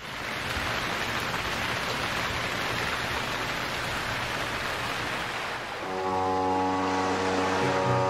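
Rain sound effect, a steady hiss of heavy rainfall. About six seconds in, low sustained musical tones join it.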